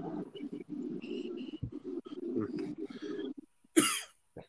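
Faint, muffled voice sounds murmuring over an online-call microphone, then a single short, loud vocal burst near the end.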